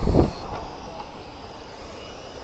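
Steady whir of small electric radio-controlled mini touring cars running laps on an asphalt track, following a short loud burst at the very start.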